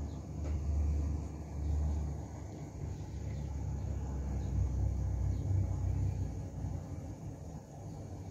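Low, muffled rumble of aquarium water and equipment heard close up. It swells and eases several times and is a little weaker near the end.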